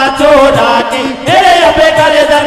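Men singing a Hari kirtan, a folk devotional pad song, in a loud, chant-like style with long held notes, over instrumental accompaniment and a steady low beat.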